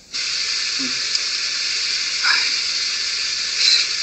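Steady hiss of background noise, with a faint short vocal sound about a second in.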